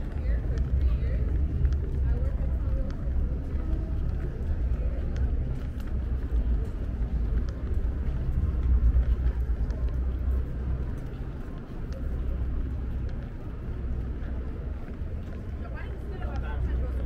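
City street ambience on a busy pedestrian sidewalk: a steady low rumble, with passers-by talking.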